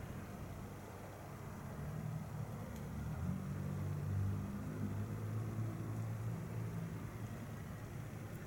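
Low rumble with a faint hum in it, swelling about two seconds in and easing near the end, over faint room hiss.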